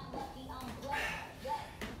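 Quiet handling sounds of a kettlebell being picked up and a foot stepping onto a plastic aerobic step, with a light knock near the end.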